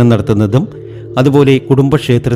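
A man's voice speaking over soft background music, with a brief pause about half a second in where only the music's steady low tones carry on.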